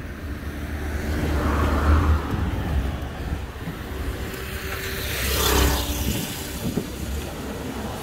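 Cars passing on a city avenue, the rush of their tyres and engines swelling and fading twice: once about two seconds in and again, louder, about five seconds in.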